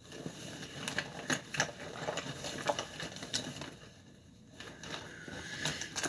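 Rummaging through a bag crammed with makeup products: small plastic cases and tubes clicking and knocking together with some rustling, with a short lull about four seconds in.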